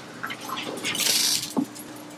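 Steady low hum with a brief rustling hiss about a second in and a small click shortly after.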